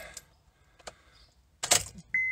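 Car key being turned in the ignition of a 2010 Honda Pilot, switching it to on without starting the engine: a small click about a second in, then a short loud rattle of the keys near the end.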